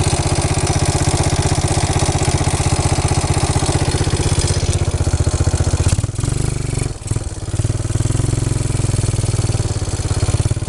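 Four-wheeler (ATV) engine idling with a steady, rapid putter. There is a brief dip in level about six to seven seconds in.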